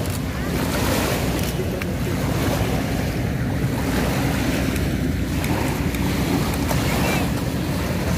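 Small lake waves lapping and breaking on a sandy shore, with steady wind rumbling on the microphone.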